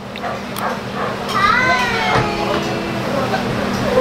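Background chatter of voices in an open-air eatery, including a high voice rising and falling in pitch about a second and a half in, over a steady low hum.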